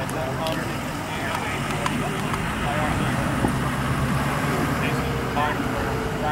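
Indistinct voices of people talking at a distance, with no clear words, over a steady low rumble.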